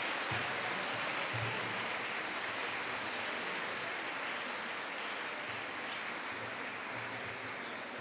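Audience applauding steadily in a hall, slowly dying away toward the end.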